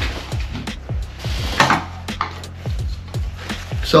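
Background music with a steady beat, under light knocks and rustles of camera gear being handled and packed into a backpack.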